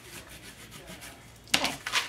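A bone folder rubbed firmly along the edges of a freshly glued paper layer on a card, a faint scraping, pressing the layers down so they stick. Near the end a sharp knock, as of the tool being put down on the table.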